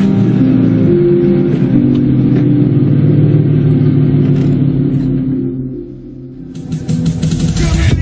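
A car engine rumbling as the car pulls away, with background music. The engine sound fades out about six seconds in, and music with sharp beats starts near the end.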